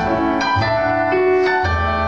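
Live instrumental break on a keyboard piano, notes struck about every half second over low bass notes, with no singing.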